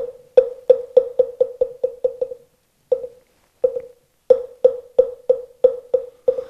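Moktak (Korean Buddhist wooden fish) struck with a mallet: a single knock, then a run of quickening strokes that thins out, a short pause, and a second run whose strokes come closer and closer together, each knock ringing briefly at one pitch. It is the moktak beat that opens a chanted dharani.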